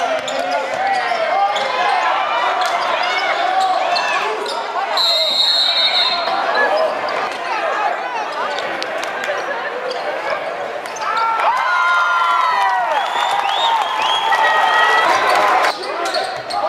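Live gym sound of a basketball game: sneakers squeaking on the hardwood court, the ball bouncing and crowd voices. About five seconds in a referee's whistle is blown, one shrill blast of over a second.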